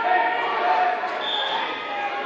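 Spectators' and coaches' voices calling out in a gymnasium during a wrestling bout, with a brief high steady tone a little after a second in.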